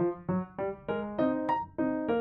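Bouncy, cute solo piano melody of short, detached notes struck about three times a second.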